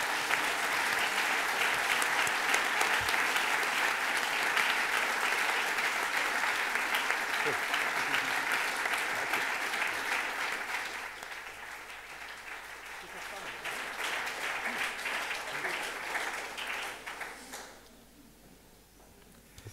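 Audience applauding, dense and steady for about ten seconds, then thinning, swelling briefly again and dying away near the end.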